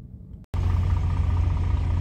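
Quiet cab room tone, then about half a second in a sudden start of a truck's engine and road noise heard inside the cab while driving: a steady low rumble with a strong hum.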